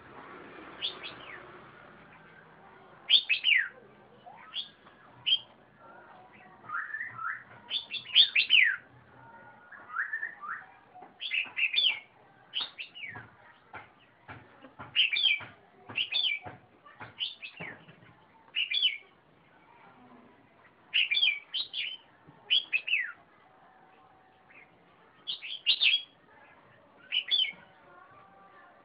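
Caged red-whiskered bulbul singing: short, loud phrases of quick downward-sliding whistled notes, repeated every second or two with brief pauses between.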